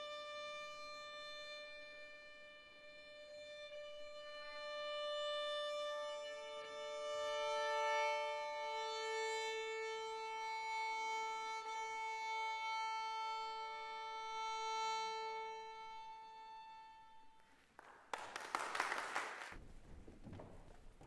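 Two violins bowing long, held notes that slowly change pitch, a drone-like sustain that swells and then fades out near the end. A short burst of loud rushing noise follows just before the end.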